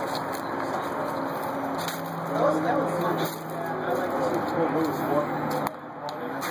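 Indistinct conversation of several men talking over one another, no single voice clear, with a steady low hum underneath from about two seconds in.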